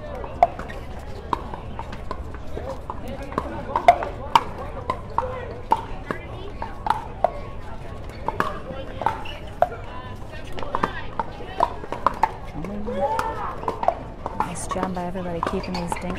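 Pickleball paddles striking a hard plastic ball in a rally, a sharp pop every half second to a second, as players trade shots at the net. Background voices of spectators run underneath.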